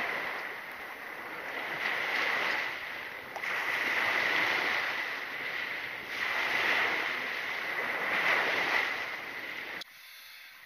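Small waves breaking and washing up a sand and pebble shore, the hiss swelling and fading every two seconds or so. It cuts off just before the end.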